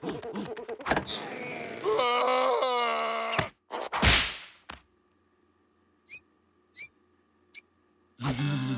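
Cartoon slapstick sound effects: knocks and thuds under a character's wordless, strained vocalising, then a loud whoosh about four seconds in and a single thunk. After that it goes almost quiet apart from three short, rising squeaky blips.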